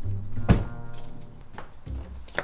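A single car door shutting with a solid thunk about half a second in, over background music.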